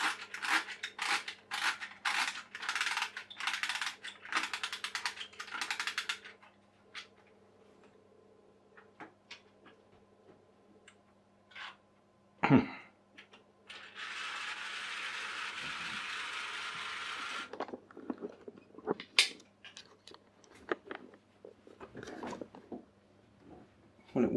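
Clockwork spring motor of a toy rigid inflatable boat being wound by its key: a run of ratchet clicks, about three a second, for the first six seconds. A single knock comes about twelve seconds in. Later the wound motor runs with a steady hiss for about three and a half seconds, then scattered clicks follow. The toy is broken and plainly has "some issues".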